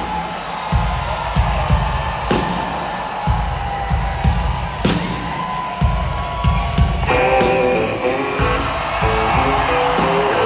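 Live rock band playing through an arena sound system: a steady drum and bass beat, with electric guitar notes joining about seven seconds in.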